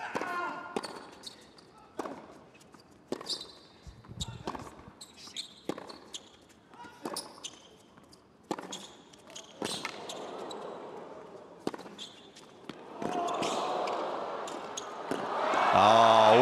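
A tennis rally on a hard court: a serve, then crisp racket-on-ball strikes and ball bounces every half second to a second. Near the end, crowd cheering swells up and turns loud.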